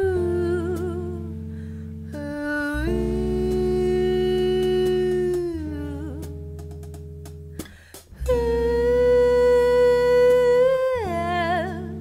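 A woman singing long held notes, each phrase ending in a wavering vibrato, backed by a live band with steady bass and keyboard chords. The music drops out briefly about two thirds of the way through, and the last phrase that follows is the loudest.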